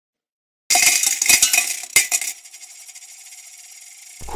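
Coins clinking and jingling together: a quick cluster of sharp metallic clinks lasting about a second and a half, with one louder clink near the end. A faint ringing then fades away.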